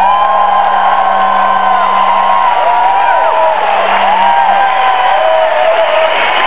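A concert audience cheering after a song ends, with many long whoops rising and falling over a steady roar of voices. A low held tone lingers underneath and dies away about four and a half seconds in.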